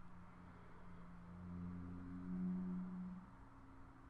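A faint, steady low hum of a few tones that swells louder in the middle and dies down again near the end.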